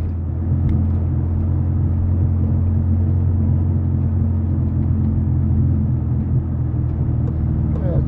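Car engine running steadily at low revs, heard from inside the cabin, with a constant low drone as the car creeps down a bumpy grass track held back in gear.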